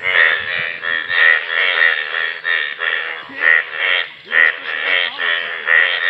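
A chorus of Indian bullfrogs, the breeding males bright yellow, calling from a rain-filled puddle. Loud overlapping croaks repeat several times a second without a break.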